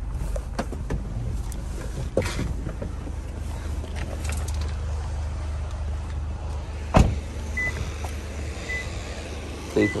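A car door shut with one sharp thump about seven seconds in, followed by three short high beeps about a second apart from the Toyota GR Yaris's warning chime, which sounds because the smart key has been carried out of the car. A low engine idle hum runs underneath.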